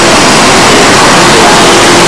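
Loud, steady rushing noise with faint voices in it.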